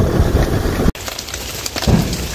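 Wind buffeting the microphone as a low rumble, cut off suddenly about a second in. Then quieter outdoor background follows, with a brief thump near the end.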